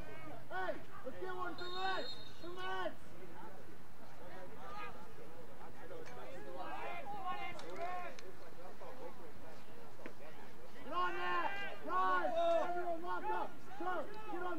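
Players and coaches shouting calls across a lacrosse field. The shouts come in three runs: at the start, in the middle, and a louder string near the end.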